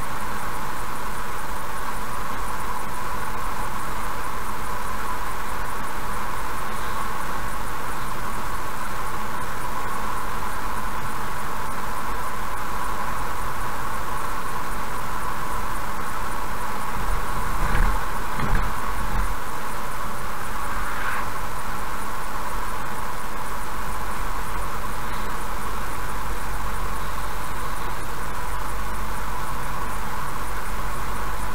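Steady road and tyre noise heard from inside a car cruising at about 66 km/h. A little past halfway there are a few low thumps as the wheels cross the joints of a short bridge.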